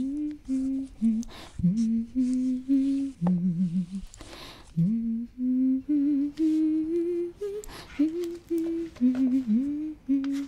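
A woman humming a slow melody in held notes without words, with a quick breath in about four seconds in.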